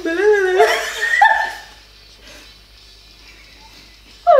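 Women laughing loudly for almost two seconds, then it goes quiet apart from faint room tone.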